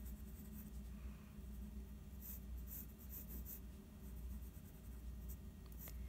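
Faint pencil scratching on paper, a run of short quick strokes about two seconds in, as block letters are filled in thick.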